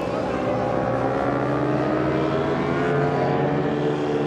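Kawasaki ZX-10R endurance racing motorcycle's inline-four engine running at low, steady revs as the bike rolls slowly, its pitch drifting only gently.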